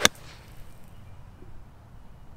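Gap wedge striking a golf ball on a full swing: one sharp click at the very start.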